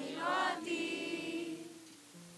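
A group of young people singing together, with a long held note that fades toward the end.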